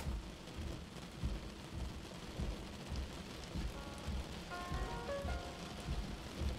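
Quiet soundtrack of rain-and-thunder ambience with low rumbling. About three and a half seconds in, a melody of short high notes joins it.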